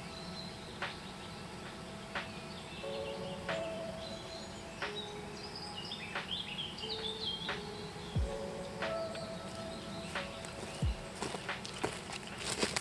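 Soft background music of held chords, over woodland ambience with birds chirping in the middle and scattered short clicks and rustles.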